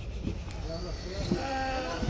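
Sheep bleating, with one long steady bleat in the second half.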